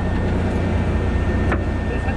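Steady low drone of a fishing boat's engine running, with a thin steady whine above it and a single click about one and a half seconds in.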